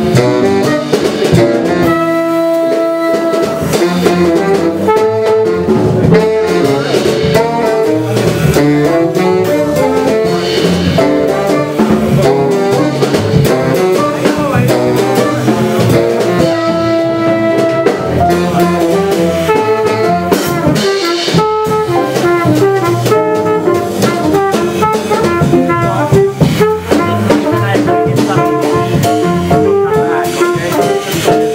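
A live avant-garde jazz group playing: saxophone and trumpet lines over upright bass and a drum kit, with some notes held and others in quick runs.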